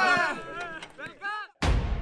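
A group of men singing a chant together, dying away over about a second and a half. After a brief silence comes a sudden deep boom with a low rumble, the start of a logo sting.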